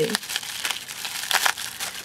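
Plastic bubble-wrap pouch crinkling and crackling in irregular bursts as fingers work at its taped seal.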